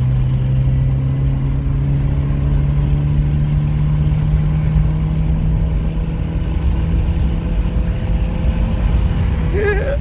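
Volkswagen Santana's four-cylinder engine pulling under acceleration, heard from inside the cabin, its note rising slowly and steadily over several seconds.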